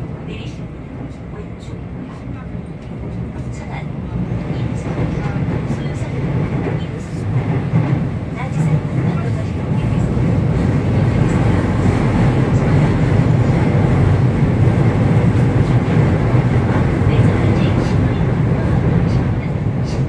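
A Seoul Metro Line 2 Hyundai Rotem train running, heard from inside the car by the doors: a steady low rumble of wheels on rail. It grows louder over the first ten seconds or so, then holds steady.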